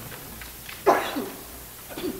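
A person sneezes once, sharp and sudden, about a second in, against quiet room tone.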